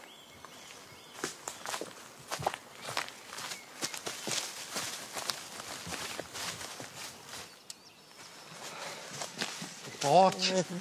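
Footsteps moving through tall grass and forest undergrowth, a run of irregular steps with rustling stalks that eases off briefly about three-quarters of the way through.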